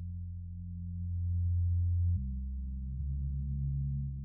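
Low, sustained synthesizer tones opening a new track of electronic music, with no beat. The held chord steps to new pitches about two seconds in and again a second later.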